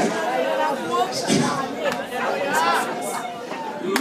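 Several voices talking over one another in a church hall, a mix of the preacher's voice and the congregation's.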